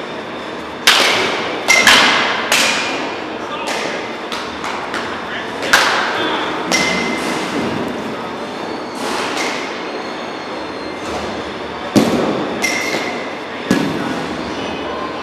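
Baseball bat striking pitched balls in an indoor batting cage: a series of sharp hits, several close together about a second in, another near the middle and two near the end, some with a short high ring. Each hit echoes in the large hall.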